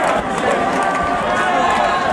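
Large crowd of football supporters celebrating a title on the pitch, many voices shouting and talking over each other at once.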